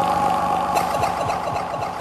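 Reggae record playing on a turntable: the song's intro, a dense held chord with a few percussion hits about a second in.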